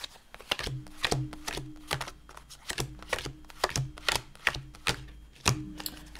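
A small tarot deck being shuffled by hand, the cards slapping and tapping together in quick, uneven strokes, about two or three a second.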